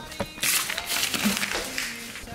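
Background guitar music, with about a second of loud rustling, handling-type noise in the middle.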